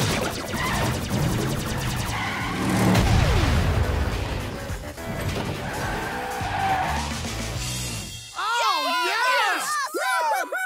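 Cartoon chase sound effects: vehicle engines running with tyre squeals over action music, with a falling whine about three seconds in. Near the end the effects stop and a girl laughs.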